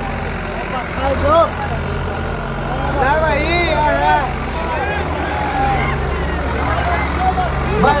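Diesel tractor engines running steadily, chained back to back for a tug-of-war pull. The engine note shifts about a second in and again near three seconds in.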